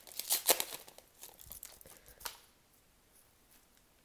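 Foil wrapper of an Upper Deck hockey card pack being torn open and crinkled by hand, crackling for about two and a half seconds, then going quiet.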